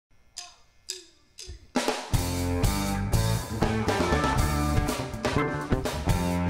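Live band starting a song: three drum hits about half a second apart, each ringing briefly, then the full band of drum kit, electric bass and electric guitars comes in together just before two seconds in and plays on with a steady beat.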